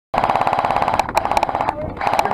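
Airsoft gun firing on full auto: a rapid, even stream of shots over the whine of its gearbox, breaking into shorter, irregular bursts about a second in and stopping shortly before the end.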